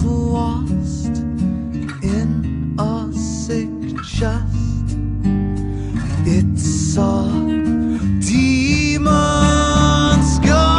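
Instrumental passage of an alternative world-fusion rock song: guitar lines with sliding notes over bass and drums, with no vocals. The arrangement grows fuller and brighter about eight seconds in.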